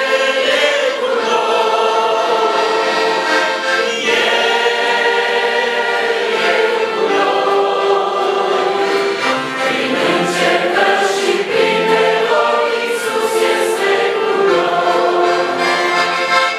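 A man singing a Romanian gospel hymn, accompanying himself on a piano accordion.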